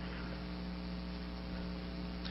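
Steady electrical mains hum, a low tone with several evenly spaced overtones, under a faint even hiss: the background noise of the lecture recording.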